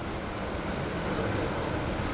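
Steady hiss of room tone picked up by the lectern microphone, swelling slightly in the middle, in a pause between sentences.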